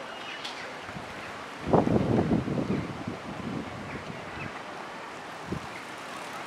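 Wind buffeting the camera's microphone over a steady windy hiss, strongest in a gust from about two seconds in to about three seconds.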